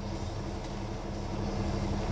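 Steady low drone of an idling diesel truck engine, heard from inside a semi-truck cab.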